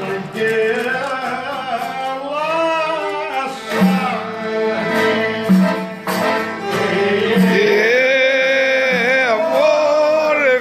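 Live Greek folk music: a violin playing while a man sings along with a wavering, ornamented melody, over a steady low accompaniment.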